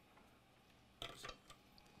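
Near silence: room tone, with a brief faint clicking sound about a second in and a single small tick just after.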